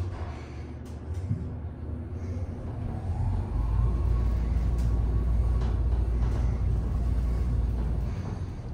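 Northern traction elevator cab descending: a low rumble of the moving car that grows much louder about three and a half seconds in, with a faint rising whine that levels off.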